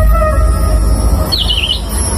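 Dhumal band music at a held pause: a deep, steady bass rumble as a sustained note fades out. A short warbling, bird-like chirp comes about one and a half seconds in.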